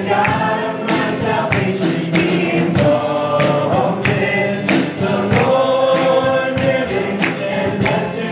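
Live church worship band playing a gospel song: several voices singing over acoustic guitar, keyboard and drums with a steady beat.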